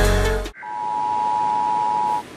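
A deep electronic music hit dies away, and about half a second in a steady two-tone emergency broadcast attention signal starts over a hiss, the warning tone that comes before a national emergency alert message.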